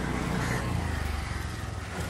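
Low rumble that swells about half a second in and eases off over the next second, under a steady hiss.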